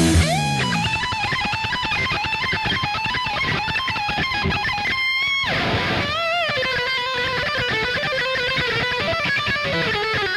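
Distorted electric guitar playing a sustained lead melody with vibrato over a rock backing with drums. The guitar slides up into the line at the start, and a pitch slide down about five seconds in leads into wide bends.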